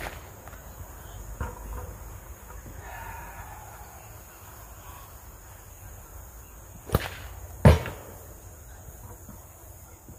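Paracord shepherd's sling cracking like a whip on release, once at the start and again about seven seconds in. The second crack is followed under a second later by a loud smack, the louder of the two sounds: the stone striking the target.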